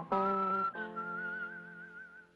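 Closing bars of a Western TV theme song: held orchestral chords that change twice, with a whistled melody note wavering above them. The final chord and whistle fade away at the end.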